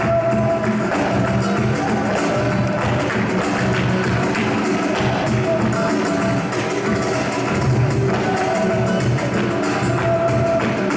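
Flamenco music: two Spanish guitars playing with a fast, steady beat of handclaps (palmas).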